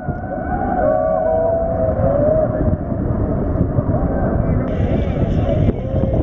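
Choppy river water sloshing right at a camera held at the surface, with wind rumbling on the microphone. Faint distant voices waver over it in the first two or three seconds.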